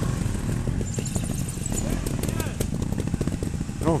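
Trials motorcycles running at low revs close by, a steady engine rumble with fast fine ticking and no clear rise or fall.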